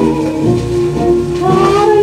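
A 1938 78 rpm shellac record playing a French song with dance-orchestra accompaniment. Sustained, wavering melody lines carry through, with a rising slide near the end.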